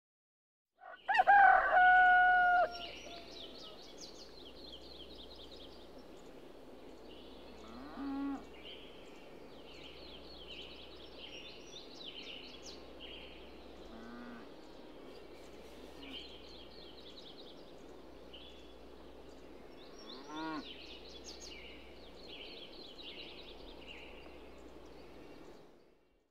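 A rooster crows once, loudly, about a second in, the call trailing off at the end. It is followed by a steady chorus of small birds chirping, with a few fainter, lower calls.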